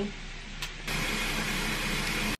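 Bath tap running into a filling bathtub: a steady rush of pouring water that starts about a second in, after a short quiet stretch.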